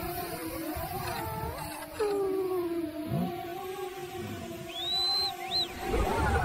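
Trailer soundtrack: held, slowly bending synthesized tones that swell about two seconds in, with two short high chirps that rise and fall near the end.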